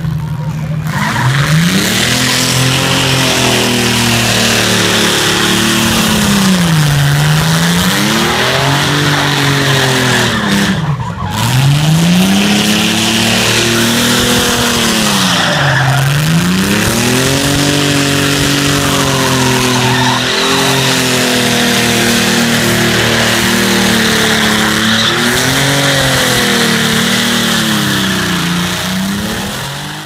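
Car engine revving hard during a burnout, its pitch swinging up and down every few seconds, over the continuous squeal and hiss of rear tyres spinning on the pad. The sound fades out at the very end.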